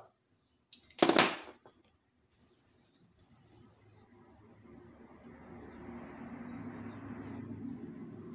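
A sharp puff of breath about a second in, then a long breath blown over a deck of tarot cards held to the mouth, slowly swelling and fading near the end, to cleanse the cards.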